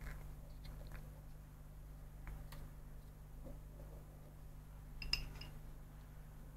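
Small model-kit parts handled by hand: faint clicks and rustles over a low steady hum, with one sharper, briefly ringing click about five seconds in.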